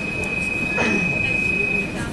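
Brussels metro CAF Boa train running alongside the platform, heard from on board: a steady rumble with one steady high-pitched squeal over it that stops near the end.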